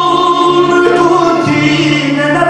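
Male voices singing a Romanian Christmas carol (colindă), holding long sustained notes and moving to new notes about one and a half seconds in.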